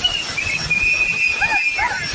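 A hand-blown whistle sounding short toots and then one long, steady blast of about a second, over the continuous din of a kavadi dance crowd. Short rising-and-falling calls follow near the end.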